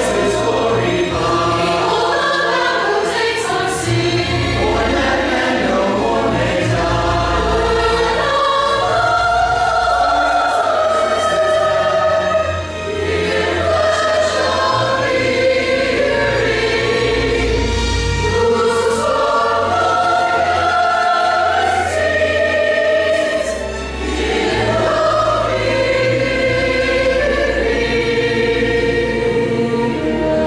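Church choir singing a Christmas cantata number over an instrumental accompaniment with a steady low bass line. The sound dips briefly twice, about a third and about four-fifths of the way through, at breaks between phrases.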